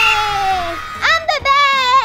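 A young girl's drawn-out cheering cries: two long held yells, each sliding slowly down in pitch, with a short break about a second in.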